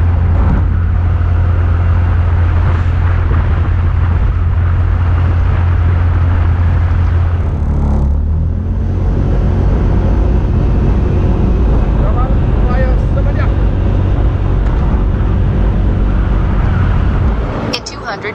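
Wind buffeting a camera microphone with road noise while riding along a street: a loud, steady low rumble that shifts about eight seconds in and falls away just before the end.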